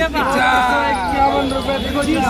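Men's voices at a wholesale produce auction: a man calling out bids in a quick, repetitive chant, with other voices around him.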